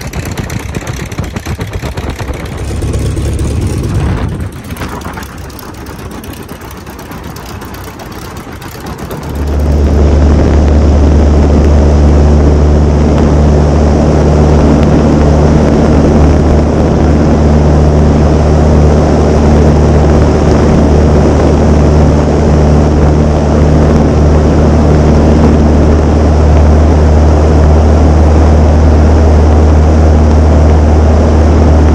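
de Havilland Tiger Moth's Gipsy Major four-cylinder engine and propeller running at low power, then opening up suddenly about nine seconds in to full takeoff power. It holds a loud, steady drone as the biplane lifts off and climbs.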